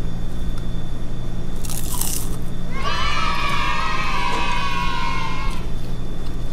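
A crunchy bite into a fried lumpia (Filipino spring roll) about two seconds in, followed by a long, high 'mmm' of enjoyment that falls slightly in pitch, held for nearly three seconds.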